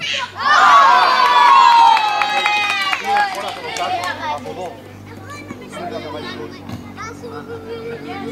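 Children at a football game shouting loudly together in one long, slowly falling yell of about three seconds, then quieter scattered children's voices and chatter.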